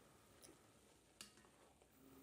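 Near silence: room tone, with two faint ticks about half a second and a second and a quarter in.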